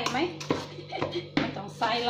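Wooden spoon knocking and scraping against an aluminium pot while thick batter is stirred, in strokes about half a second apart.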